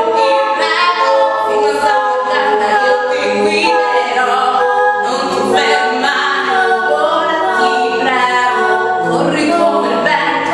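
Three-voice a cappella singing, two women and a man, holding sustained harmonised notes together with no instruments.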